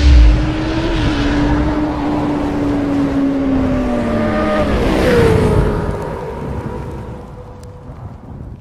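Motorcycle engine sound effect revving under a rushing hiss, opening with a loud low boom. Its pitch sinks slowly over the first four seconds, jumps up about five seconds in, then the sound fades away toward the end.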